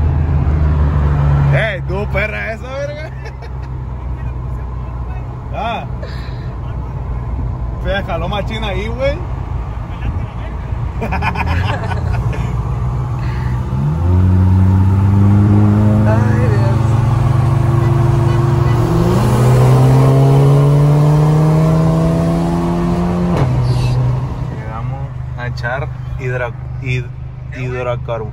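Volkswagen Golf GTI Mk7's turbocharged four-cylinder engine, heard from inside the cabin, pulling hard from about halfway through. Its pitch climbs steadily, drops briefly at an upshift and climbs again, then cuts off suddenly. Before that the engine runs quieter under voices and laughter.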